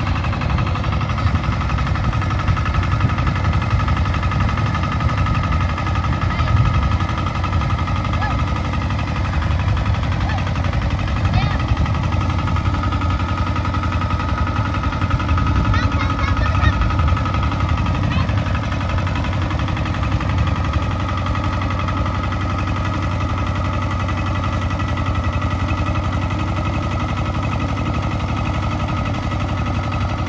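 Two-wheel power tiller's single-cylinder diesel engine running steadily under load while ploughing a paddy field.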